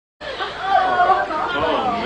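Indistinct voices chattering over one another, no clear words.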